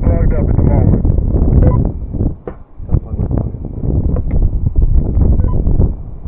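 Wind buffeting a helmet-mounted camera's microphone high on a tower: a loud, gusting low rumble that dips briefly about two and a half seconds in. A voice is heard in the first second.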